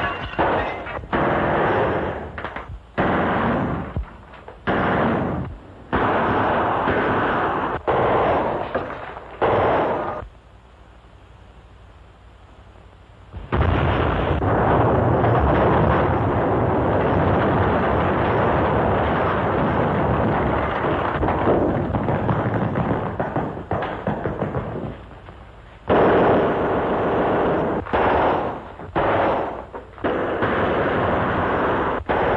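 Gunfire and blasts on an early sound-film track: a run of separate loud reports for about ten seconds, then a short lull. After that comes a long, unbroken stretch of heavy firing lasting about ten seconds, and more single reports near the end.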